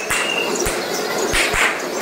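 Loud, dense din of a temple-festival crowd, with irregular low thumps and short bright bursts every half second or so.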